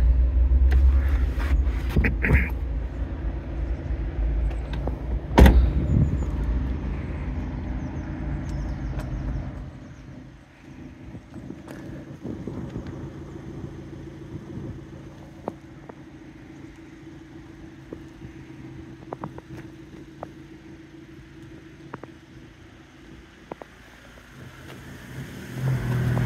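A single loud thud about five and a half seconds in, as the car's tailgate is shut, over a steady low rumble and hum that drops much quieter about ten seconds in; faint scattered clicks follow.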